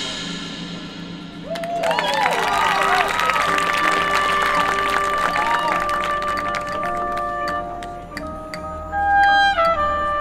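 Marching band playing: a loud chord dies away, then brass hold long notes with some sliding pitches over light percussion strikes. A loud accented hit comes about nine seconds in.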